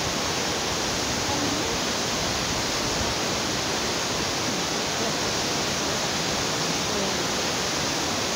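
Waterfall rushing: a steady, unbroken noise of falling water.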